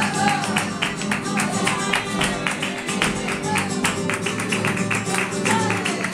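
Live flamenco music for a flamenco villancico: acoustic flamenco guitars keep up a driving rhythm of sharp, evenly spaced strokes, and a voice sings briefly near the start and again near the end.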